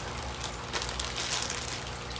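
Thin plastic bag crinkling and rustling in irregular bursts as hands press the air out of it and start twisting the top closed.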